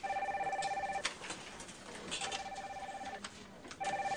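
Office telephones ringing in trilling bursts of about a second each: one at the start, another about two seconds in, and a third starting near the end.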